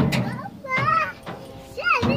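Young children's high-pitched voices calling and squealing in gliding tones as they play on a playground climbing frame, twice in quick succession.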